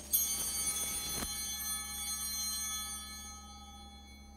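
Altar bell struck once at the elevation of the consecrated chalice, ringing with many high tones that slowly fade away.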